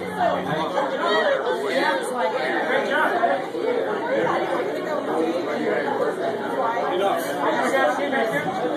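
Many people talking at once: a steady babble of overlapping conversation in a large room.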